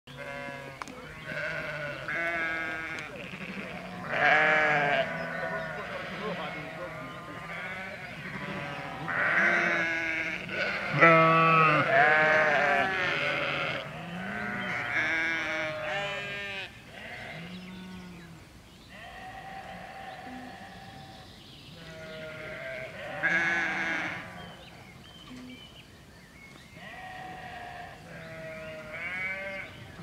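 A flock of sheep bleating, many calls one after another and overlapping, several long and quavering. The loudest bleats come around four seconds in, from about nine to thirteen seconds, and again around twenty-three seconds.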